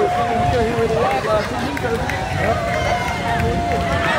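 People's voices talking at a street parade over a constant low rumble, with a held steady tone sounding at the start and again in the second half.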